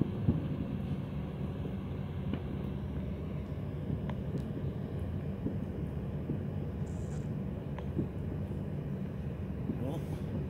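A steady low engine rumble with a faint even hum, like an idling vehicle, with a few small clicks and one sharper tick just after the start.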